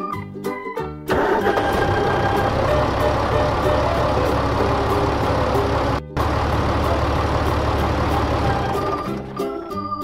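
Cartoon tractor engine sound effect: a rough, steady engine running for about eight seconds as the tractor drives, with a short break in the middle. A few notes of children's music come before and after it.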